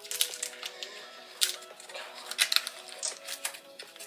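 Plastic retail packaging crinkling and clicking as it is handled and the foam insert is worked out, with a few sharp crackles, the loudest about a second and a half in and again near two and a half seconds. Background music plays throughout.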